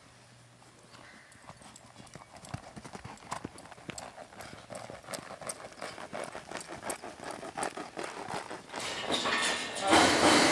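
Hoofbeats of a young sorrel mare on soft arena dirt, a run of dull strikes that grows steadily louder as the horse comes closer. A louder rushing noise sets in near the end.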